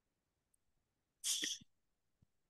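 A single short, sharp burst of breath noise from a person, like a sneeze or a forceful exhale into the microphone, about a second and a quarter in.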